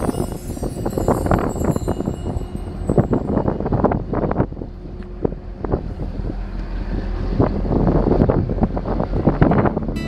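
Wind buffeting an outdoor microphone in irregular gusts over a steady low rumble.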